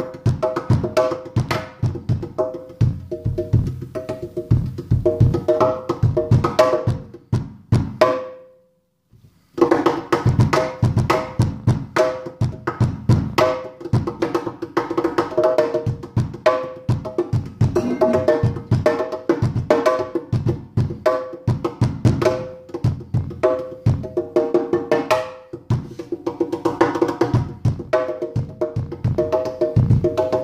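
Hands drumming a fast improvised groove on a stainless steel kitchen sink: deep thumps from the basin mixed with quick sharper taps that ring at two recurring pitches. The playing stops for about a second some eight seconds in, then resumes.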